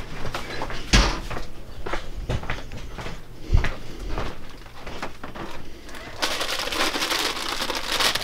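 Scattered knocks and a couple of dull thumps of things being bumped and handled. From about six seconds in, a continuous crinkling of a clear plastic bag being handled.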